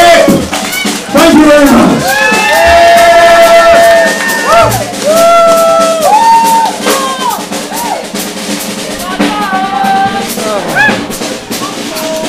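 Live rock band playing: a sung line of long held notes that bend at their ends, over a drum kit with steady cymbal hits.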